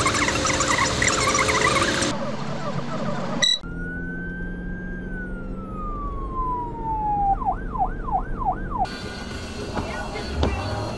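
Electronic police siren: one long wail that rises slightly and then falls, followed by four fast yelps. Music plays for about the first two seconds before it.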